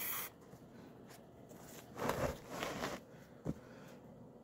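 Faint handling noise as a large, rough stone is turned in the hand: soft rustling scrapes about halfway through and a single small click near the end.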